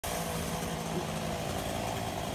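Chainsaw engine idling steadily between cuts.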